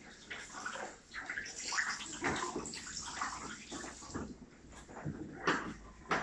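Water from a sink spray hose running and splashing into a ceramic wash basin, coming and going unevenly, with a sharper knock about five and a half seconds in.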